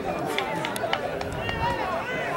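Several voices shouting and calling at once during rugby play, players and onlookers overlapping, with a few sharp clicks among them.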